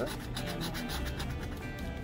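A coin scraping the coating off a paper scratch-off lottery ticket in rapid short back-and-forth strokes.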